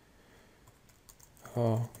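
A short run of faint keystrokes on a computer keyboard as a word is typed.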